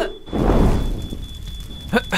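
Cartoon dash-away sound effect as characters flee: a low, noisy rush that comes in about a third of a second in and fades away over the following second.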